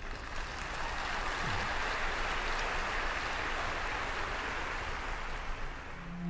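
A large audience applauding, a steady clapping that dies away near the end.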